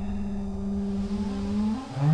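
Trailer sound design: one sustained low tone over a deep rumble, holding steady, then climbing in pitch in steps over the last half second as a riser.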